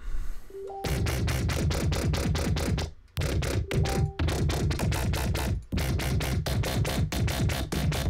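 Synthesized dubstep/electro bass from Native Instruments Massive playing back: a deep bass pulsing fast and evenly, about five pulses a second, from an LFO on the patch. It starts about a second in and breaks off briefly near three seconds before resuming.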